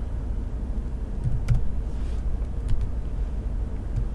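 A few separate computer keyboard keystrokes over a steady low rumble of background noise.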